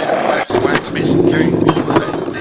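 Skateboard wheels rolling over rough asphalt, a steady rolling noise with a few short knocks from the board, along with a voice.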